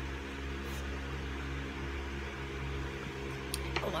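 A steady low hum from a running appliance, such as a fan or air conditioner, with a few faint clicks near the end.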